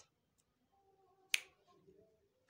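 A single sharp finger snap a little past the middle, marking the first of four counted anti-clockwise hand circles.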